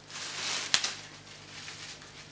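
Bubble wrap rustling as it is handled, with a sharp crackle about three-quarters of a second in and a few fainter ones after.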